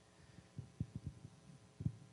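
A few soft, low thumps, about five in a second and a half, over a faint hum.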